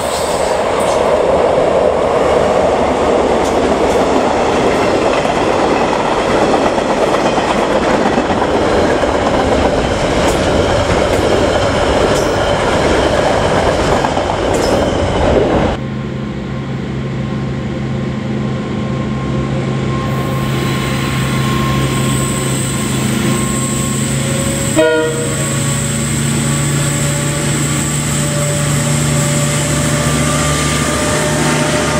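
A train running loudly through a station, a steady rushing rumble, then, after a cut, KiwiRail DL-class diesel-electric locomotives approaching with a freight train, their engines a steady drone with held tones and a brief knock about 25 seconds in.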